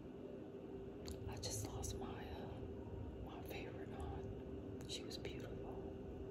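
Soft, close-up whispering with sharp little mouth clicks, over a faint steady hum.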